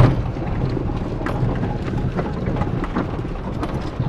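Pickup truck driving slowly over a rough dirt track, heard from inside the cab: a steady low engine and road rumble with scattered knocks and rattles.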